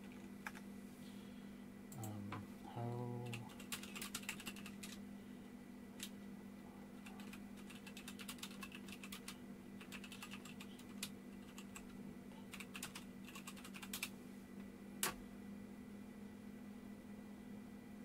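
Typing on a computer keyboard: several quick runs of keystrokes entering a web search, with one single louder key click about fifteen seconds in.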